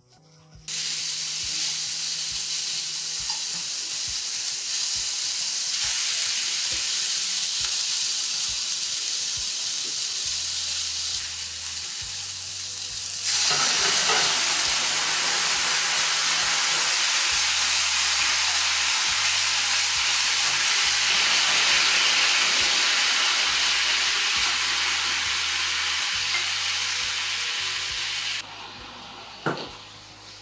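Halved eggplants frying in hot oil in a frying pan, a loud steady sizzle. It starts abruptly about a second in, gets louder about halfway through and drops away near the end.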